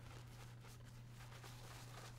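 Faint scratchy strokes of a shaving brush swirling soap on damp skin, working it into a lather, over a low steady hum.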